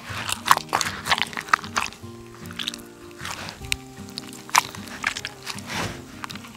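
Canned peeled tomatoes being crushed by a gloved hand in a plastic jug: irregular wet squelches and crunches, over background music with steady held notes.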